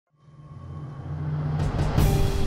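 Opening of a TV drama's title-card sound: a low rumbling drone that fades in from silence and swells steadily louder, with two quick whooshes just before the theme music hits.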